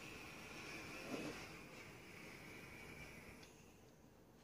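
Faint steady hiss of an e-cigarette coil firing during a long drag, cutting off about three and a half seconds in.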